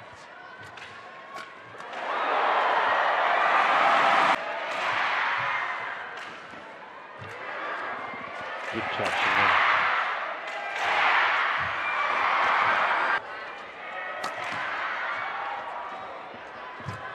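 Badminton rally with sharp racket strikes on the shuttlecock cracking out every second or so, under loud arena crowd noise that rises and falls in several swells, two of them cutting off suddenly.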